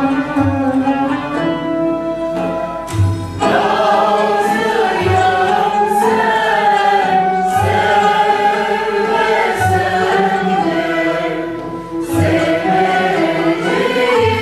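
Turkish classical music ensemble performing a şarkı in makam segah: plucked and bowed instruments play alone at first, and about three seconds in a mixed choir joins, singing over them. A low drum stroke falls roughly every two seconds.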